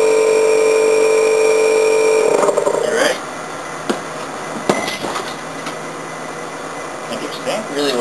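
A loud, steady buzzing hum cuts off after about two seconds. Then come a few sharp knocks, the strongest about four and a half seconds in, as the glass bottle held under vacuum is struck and breaks.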